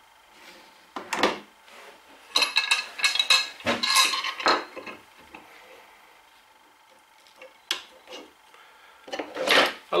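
Metal G-clamps clinking and knocking as they are picked up and fitted onto a wooden joint: a single knock about a second in, a quick run of ringing metallic clinks from about two and a half to four and a half seconds, and one sharp click near eight seconds.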